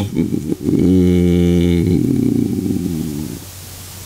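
A man's long, low hesitation sound in the middle of a sentence: a drawn-out 'e-e-e' on one pitch, held for about three seconds and trailing off.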